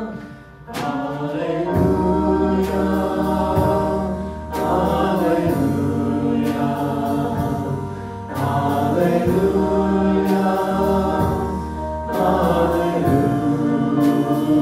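A small group of mixed voices singing a hymn together, accompanied by keyboard and bass guitar. The music comes in after a brief lull in the first second, then runs on in sustained, evenly paced phrases.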